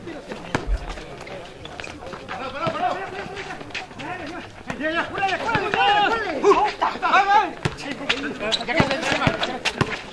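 Voices of players and spectators calling out across an outdoor basketball court, louder in the middle of the stretch, with occasional sharp knocks.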